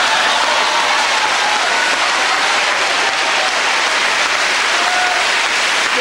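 Large audience applauding, loud and steady.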